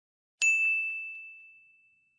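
A single bright ding sound effect: one clear, high chime struck about half a second in, then ringing away over about a second and a half.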